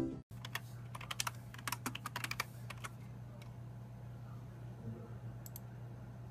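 Typing on a computer keyboard: a quick run of key clicks for about two seconds, then two more clicks near the end as the Images tab is selected, over a steady low hum.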